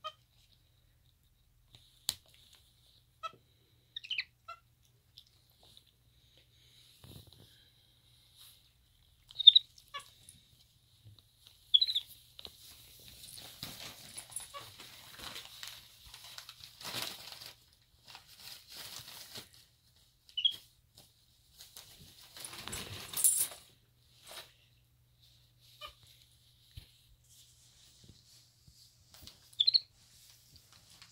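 Paper rustling and crinkling as a capuchin monkey handles a gift bag and wrapping, in spells through the middle stretch. Short, high squeaks come now and then, the loudest about ten and twelve seconds in.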